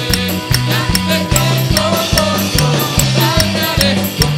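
Live band playing an instrumental passage: drum kit keeping a steady beat with regular cymbal strikes, electric bass moving between notes, and keyboard.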